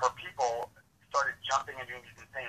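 Speech: a person talking, with a short pause partway through.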